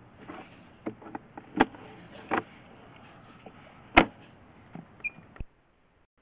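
Sewer inspection camera's push cable being reeled back through the line: irregular clicks and knocks over a faint hiss, the sharpest about a second and a half in and at four seconds. The sound cuts off suddenly near the end.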